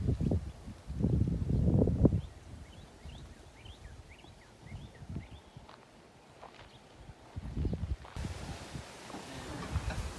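Outdoor ambience: uneven low rumbling gusts on the phone's microphone, with a run of faint, short, high bird chirps a few seconds in.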